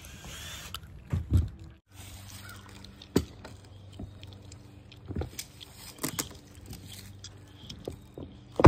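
Scattered wooden knocks and clunks as plywood sheets are pried up and lifted off the wooden frame of a mini ramp being dismantled, over a faint steady low hum.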